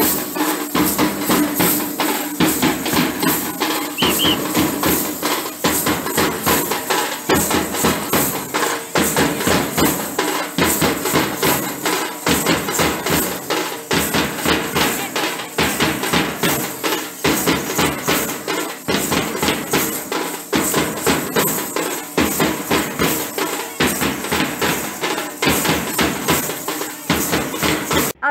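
Lezim jingles clashing in unison with procession drumming, a steady fast beat of several strikes a second.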